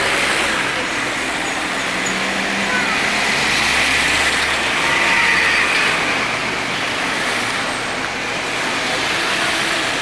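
Steady street traffic noise from passing motor vehicles, with indistinct voices in the background. A low engine hum swells slightly around the middle and fades again.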